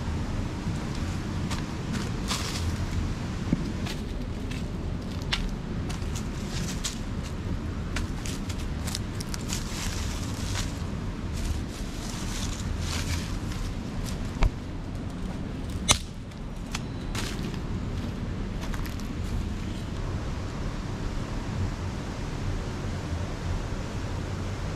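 Dry sticks and leaf litter rustling and crackling as firewood is gathered by hand and trampled underfoot, with two sharper snaps a little past halfway. A steady low rumble runs underneath.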